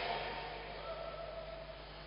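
A pause in amplified speech: the voice dies away at the start, leaving faint steady hiss and low hum, with faint held tones in the middle.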